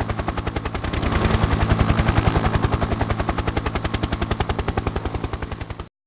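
Helicopter rotor chop: a rapid, even beating over a low engine hum. It grows a little louder about a second in, then cuts off suddenly near the end.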